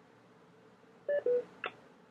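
Two short electronic beeps, the second lower in pitch than the first, then a brief chirp, all about a second in, over faint line hiss: a telephone-style tone on a teleconference audio line.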